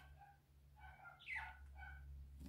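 Near silence over a steady low hum, with a few faint, short whines from an animal, one of them rising in pitch a little past halfway.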